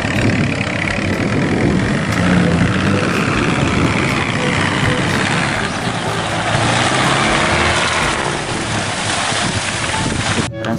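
Military jeep's engine running steadily as it drives through deep water, with water rushing and splashing around the body.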